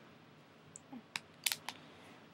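A handful of short, light clicks and taps, about five, clustered just after a second in, over quiet room tone.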